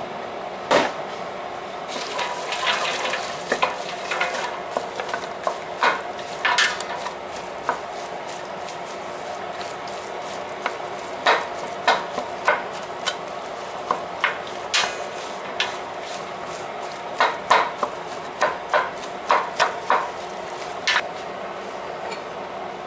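Ground beef, onions and green peppers browning in a large stainless steel pot, sizzling steadily, while a utensil stirs the meat and knocks and scrapes against the steel many times at an irregular pace.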